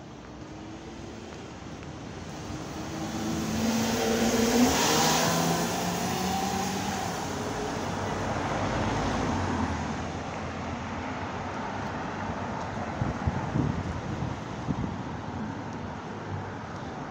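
Street traffic: a motor vehicle passes close by, its engine tone and tyre noise swelling to a peak about four to five seconds in and then fading. Steady road traffic noise follows, with a few short knocks near the end.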